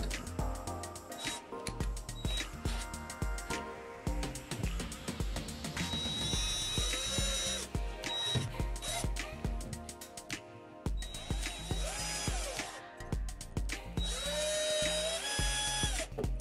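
Cordless drill with a step drill bit boring through a plastic bottle cap in a few short runs, its motor whine rising as it spins up, over background music with a steady beat.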